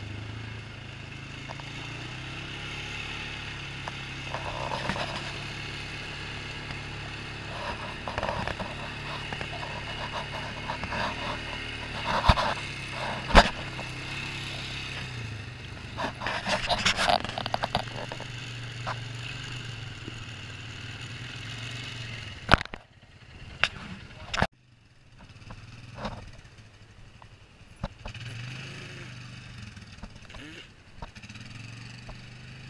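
ATV engine running at low speed as the machine crawls over a rocky trail, with sharp knocks and rattles as it jolts over rocks. The engine hum briefly drops away near the end, between a few more knocks.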